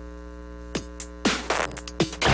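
Steady electrical mains hum, then in the second half two whooshes that sweep sharply down in pitch and a quick run of sharp clicks: transition sound effects of a TV show intro.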